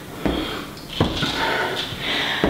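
Sneakers landing on a hardwood floor during reverse lunges, two thuds, with breathing between them.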